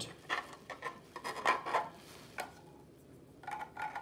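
Hard 3D-printed plastic model parts clicking and rubbing together as they are picked up and handled on bubble wrap, with a light rustle of the wrap: a run of short clicks, mostly in the first half.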